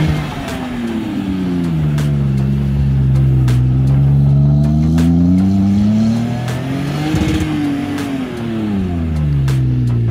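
A Toyota Tacoma pickup's engine revving as the truck spins circles in loose sand. The pitch drops early on, climbs steadily to a peak about seven seconds in, then falls again.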